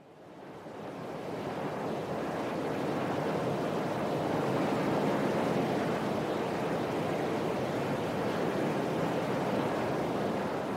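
Steady rushing noise like surf or wind, swelling up over the first couple of seconds and then holding level: the sound-effect intro at the start of a pop song, before the instruments come in.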